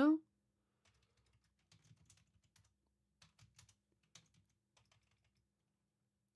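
Computer keyboard typing: faint keystrokes in a few short clusters over several seconds.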